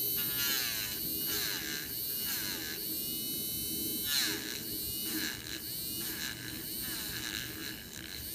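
Handheld electric eraser running with a continuous whine, its pitch sagging and recovering about once a second as the spinning tip is pressed against the action figure's plastic head to shave down the sculpted hair.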